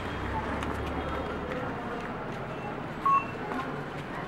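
Outdoor street ambience: a steady background hiss with indistinct voices. About three seconds in, a short, sharp beep-like tone stands out above it.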